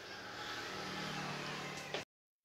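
A motor vehicle's engine running in the background, a steady low hum that grows slightly louder.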